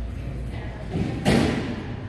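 A single heavy thud a little over a second in, with a smaller knock just before it and a short ring-out after.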